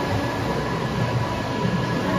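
SKYJET TDL3300 large-format printer running, its rollers feeding printed media through the machine: a steady mechanical rumble with faint steady high tones.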